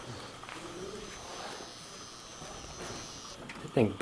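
A faint, steady high-pitched buzz from the 1979 General Elevator's equipment, cutting off sharply about three and a half seconds in.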